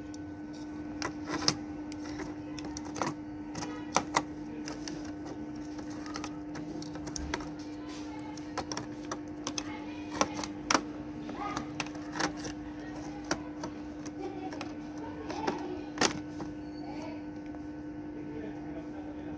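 Irregular light clicks and taps as a laptop's blower fan and heatsink assembly are handled and fitted back onto the motherboard, over a steady low hum.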